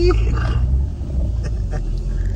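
Low road and engine rumble inside a moving car's cabin, with a high, drawn-out laughing voice ending right at the start and quieter laughter after.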